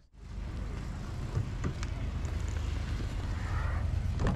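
Car engine running with a steady low rumble, and a couple of faint clicks about a second and a half in.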